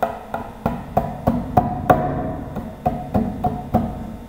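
Instrumental introduction to a Hindi devotional song (bhajan): short pitched notes with sharp attacks and quick decays, played at about three notes a second.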